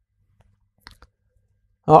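Near silence broken by two faint, short clicks about a second in, then a man's voice begins near the end.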